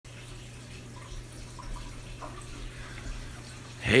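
Reef aquarium's water circulation: running, trickling water over a steady low hum from its pumps.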